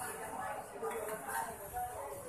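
Indistinct chatter of several people moving about, with light clinks.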